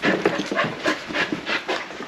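A dog panting rapidly, about four or five quick breaths a second.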